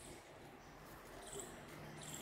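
Faint insect chirps: short high-pitched bursts repeating about once a second over quiet outdoor hiss.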